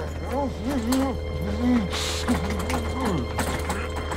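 A man's muffled, strained groans, short rising-and-falling sounds one after another, as he bites on a leather gag, over a steady electrical tone and low hum from a machine with scattered clicks: a radio-drama effect for a brain-altering electric treatment.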